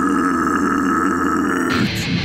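A break in a brutal death metal song: the drums drop out and a long, low guttural growl is held over a sustained guitar note. Near the end the drums and guitars come back in.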